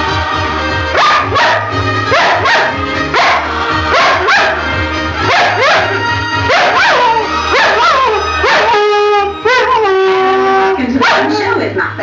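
A flat-coated retriever barking and howling along to a television theme tune: a run of short yelping cries that rise and fall about twice a second, then a longer drawn-out howl near the end. The theme music, with a steady bass line, plays loudly underneath.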